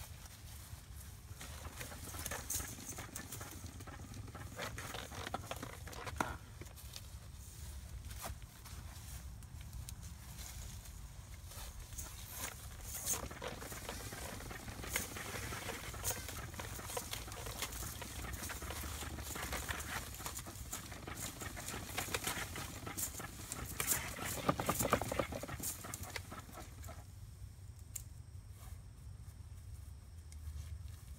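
Suncast plastic hose reel turning as a 100-foot garden hose is pulled off it and dragged out across grass, an irregular rustling crackle. It dies away near the end.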